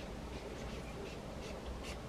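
A steady low hum of a car with its engine running against the frost, heard from inside, with faint, soft scratching noises scattered through it.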